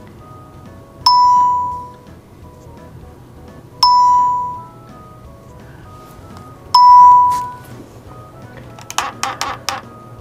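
A computerized longarm quilting system beeping as trace points are set: three chimes, each a clear tone fading over about a second, about three seconds apart. Soft background music runs underneath, and a quick patter of clicks and rustling comes near the end.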